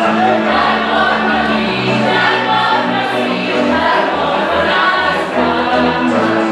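A large group singing a Wallachian folk song together in chorus over instrumental accompaniment, with many voices holding notes that change about once a second.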